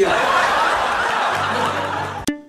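Crowd laughter: many people laughing at once in a dense, steady wash that starts right after a line of dialogue and begins to taper near the end.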